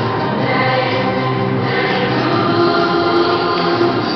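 Choral music: a choir singing long, held notes over instrumental backing.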